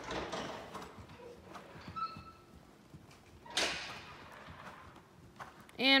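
Hoofbeats of a ridden horse on soft sand arena footing: dull, uneven thuds. A brief louder whoosh of noise comes about three and a half seconds in.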